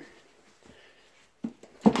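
Light clicks and knocks of small things being handled on a desk, with one sharper click near the end.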